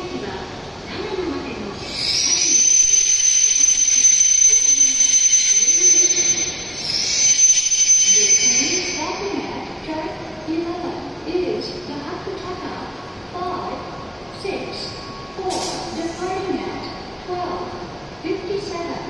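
E7 series Shinkansen train coming to a stop, with a loud hiss of released air for about five seconds, a short break, then a second briefer hiss.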